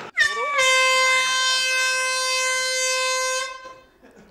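An air horn sounding one long blast. Its pitch slides up briefly at the start, then holds steady for about three seconds before fading out.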